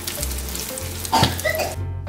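Food sizzling as it fries in a non-stick frying pan, with a brief louder knock just over a second in; the sizzling stops shortly before the end. Background music plays underneath.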